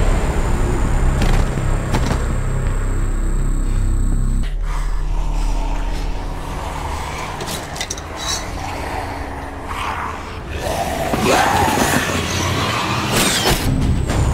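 Dramatic TV soundtrack music with low rumbling effects. It changes abruptly about four and a half seconds in, dips, then swells again with sharp hits near the end.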